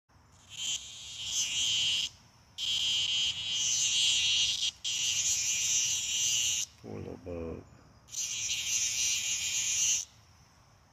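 Loud, high-pitched insect buzzing from the woods, most likely cicadas, coming in stretches of about two seconds that stop and restart with short gaps. A brief voice is heard a little after the middle, in one of the pauses.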